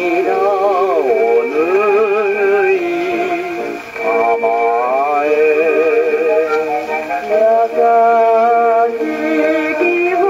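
English Columbia No. 201 acoustic gramophone playing a 78 rpm shellac record of a Japanese popular song, with a vocal line sung with heavy vibrato over steady accompaniment. It has the thin, bass-light sound of an acoustic soundbox.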